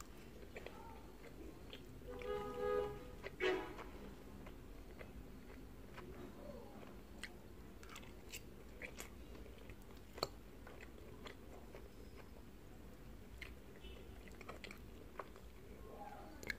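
Close-miked chewing and mouth sounds of someone eating baked pasta with melted mozzarella, with scattered sharp clicks. About two seconds in come two short pitched sounds, one after the other, louder than the chewing.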